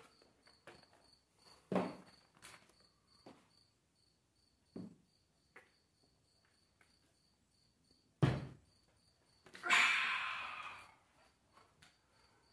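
Faint insect chirping, a high steady pulse about three times a second, with a few soft knocks, a louder knock about eight seconds in, and a second of rustling just after.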